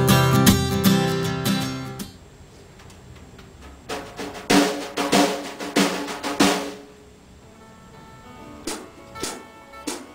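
Guitar music fading out in the first two seconds. Then a drum kit is played in a rehearsal room: a short run of hits about four seconds in, and a few single hits near the end.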